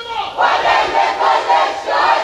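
A crowd of marchers chanting a slogan together, loud, many voices in unison coming in about half a second in, answering a single lead chanter.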